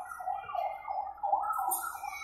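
Electronic siren of a small play fire truck, a fast warbling yelp that rises and falls about four times a second.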